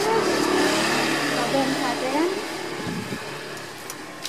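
A motor vehicle running past, loudest in the first two seconds and then fading away, with faint voices in the background.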